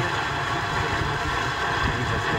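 FM car radio on 88.8 MHz receiving a distant station by sporadic-E skip: a steady hiss of a weak, fading signal, with the newsreader's voice drowned under the noise.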